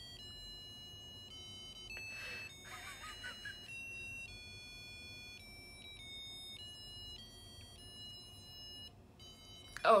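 Musical birthday greeting card's sound chip playing an electronic beeping melody, one steady note after another. A wheezing laugh comes in about two seconds in.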